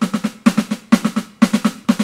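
Roland V-Drums electronic drum kit played with sticks: a steady run of even strokes, about seven a second, with every third note accented, grouped in threes.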